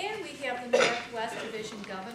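Indistinct talking in the room, with clinks of dishes and cutlery.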